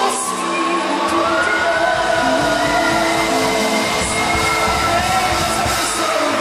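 Live gospel worship music: long held notes over a low, busy beat that comes in about a second in.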